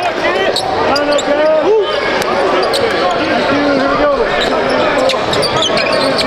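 Game sound in a basketball gym: several overlapping, unintelligible voices calling out, with a basketball bouncing on the hardwood floor.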